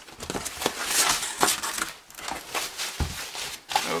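Cardboard box being opened by hand: the flaps scraping and rustling as they are pulled back, with crinkling of the plastic wrapping inside, and a thump about three seconds in.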